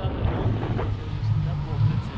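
Wind buffeting the action camera's microphone in a paraglider's airflow, a steady low rumble.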